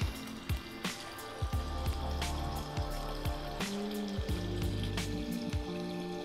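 Background music with a beat and sustained tones, over the steady splash of a pond waterfall filter's outflow pouring into the water.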